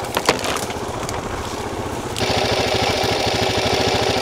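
Enduro motorcycle engine running, with a few sharp cracks right at the start. About two seconds in, a steady hiss joins the engine and holds.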